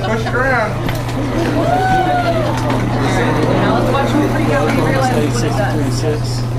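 Indistinct voices of children and adults talking at once, with a high drawn-out call that rises and falls about two seconds in, over a steady low hum.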